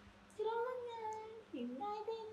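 A high, drawn-out voice, held at one pitch for about a second, then dipping and rising again before carrying on.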